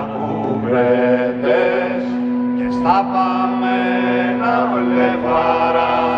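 Live band music: a melody of long held notes, each starting with a short upward slide, over a steady low drone.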